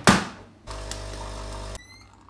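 A sharp clack as the top of a single-serve coffee machine is pressed shut. After a short pause the machine's pump hums steadily for about a second while it brews an americano, and the hum cuts off suddenly.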